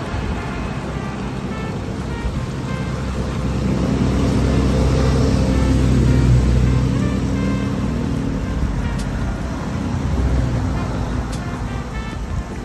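Water gushing and bubbling up through a round cover in the road from a leaking underground water pipe, with a motor vehicle's engine rumbling louder in the middle and fading again.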